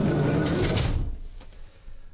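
The sliding side door of a RAM Promaster van is pulled shut. It rumbles along its track for about a second, then dies away.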